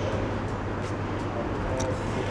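Steady low hum under even background noise, with a few faint light ticks.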